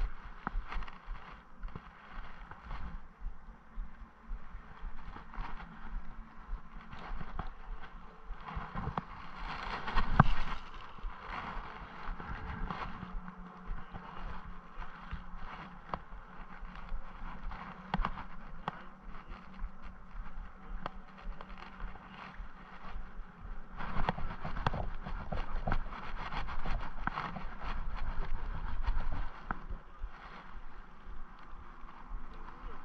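Handling noise from a spinning fishing rod and reel: scattered small clicks and rubs over a steady outdoor hiss, with a loud burst about ten seconds in and a louder stretch near the end.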